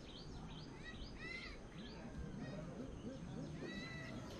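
Faint outdoor ambience with small birds calling: repeated short, arching chirps, several a second, with a cluster of stronger ones about a second in and again near the end.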